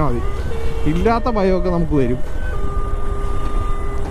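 Motorcycle on the move: steady low engine and wind rumble, with a man's voice talking briefly about a second in.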